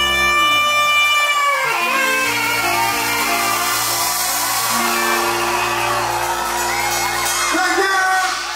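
A live reggae band holding the closing notes of a song: a long saxophone note for the first second and a half, then a sustained chord over steady bass. The crowd is cheering and whooping underneath.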